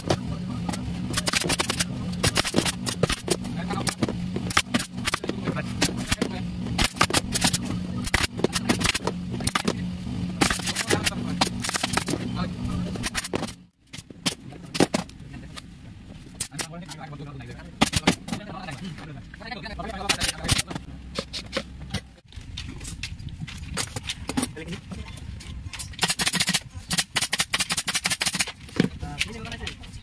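Pneumatic upholstery staple gun firing in quick runs of sharp shots while covering an office-chair armrest, over a steady low hum in the first half. The sound cuts off abruptly twice.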